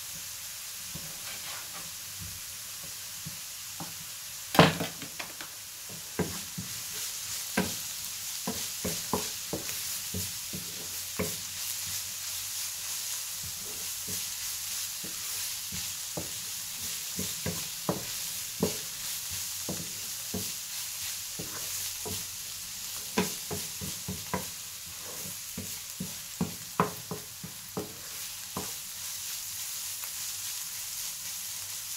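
Diced beetroot sizzling steadily in a non-stick frying pan, stirred with a wooden spoon that knocks against the pan many times. The loudest knock comes about four and a half seconds in.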